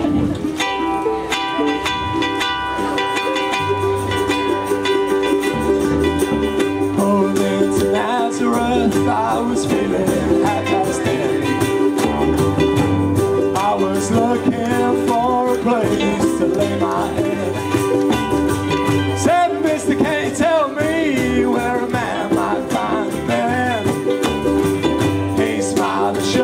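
Ukulele group strumming and singing through a PA, with long steady held notes in the first few seconds and a sung melody coming in about eight seconds in.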